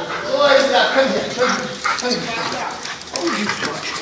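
A working dog vocalising, with the voices of a group of people around it.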